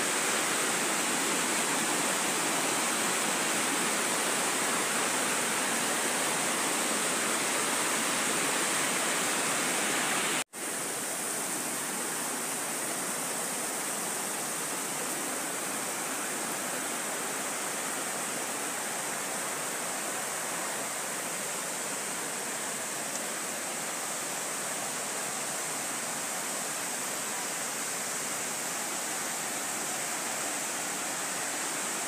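Steady rush of a shallow river running over rocks. It breaks off for an instant about ten seconds in and resumes a little quieter.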